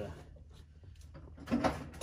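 Quiet handling of a steel three-point hitch pin and its hairpin cotter pin, with a short metallic scrape or clunk about one and a half seconds in.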